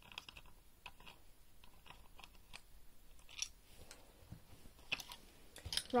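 Faint, scattered clicks and light knocks of small parts being handled as an emergency door release is taken apart.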